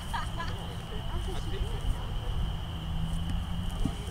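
Faint voices of distant players calling across an open field, over a low, uneven rumble and a steady high-pitched tone.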